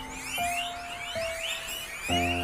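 Background music holding long single notes, over a herd of guinea pigs squeaking in many short, overlapping rising-and-falling chirps.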